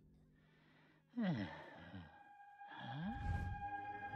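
A cartoon character's voice giving sighing, falling-pitch groans, three or four in a row, starting about a second in after a moment of near silence. A held high tone comes in under them about halfway through.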